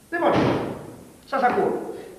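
A door slams shut right at the start, a sudden loud impact that fades over about a second. A short burst of a man's voice follows about a second later.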